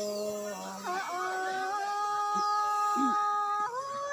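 A singer's voice holding long drawn-out notes in a folk song: one note held until about a second in, then a higher note sustained steadily for about two and a half seconds before the voice moves on.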